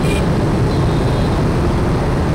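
Steady low rumble of a moving motorbike: its engine mixed with wind buffeting the microphone.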